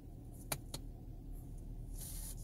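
2019 Camaro SS's 6.2-litre V8 idling steadily, heard from inside the cabin, with two sharp clicks about half a second in, a quarter second apart, from the electronic parking brake switch being worked.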